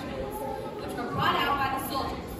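Several voices talking at once, loudest from about a second in.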